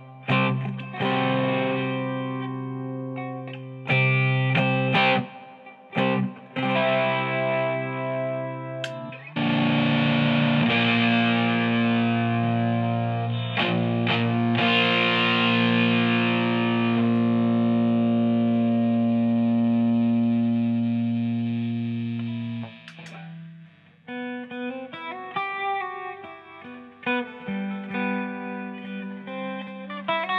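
Electric octave mandolin (Eastwood MRG, round wound strings, tuned GDAE) played through an amplifier: strummed chords with short breaks, then about nine seconds in one big distorted chord that rings and slowly fades for some thirteen seconds before it stops. Near the end, lighter picked single notes begin a new melody.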